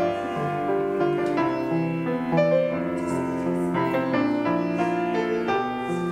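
Solo grand piano playing a slow, gentle piece, chords held and changing about once a second.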